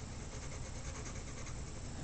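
Graphite pencil shading on paper: faint, rapid scratching strokes.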